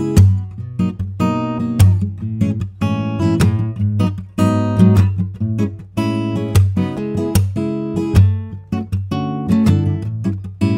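Taylor GA3 grand auditorium steel-string acoustic guitar, with a Sitka spruce solid top and sapele back and sides, played with the fingers: a continuous run of picked notes and chords ringing over a steady low bass.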